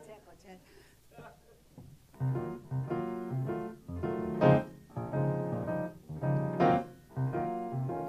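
Grand piano starting a swing introduction about two seconds in: chords over low bass notes, with a couple of louder accented chords.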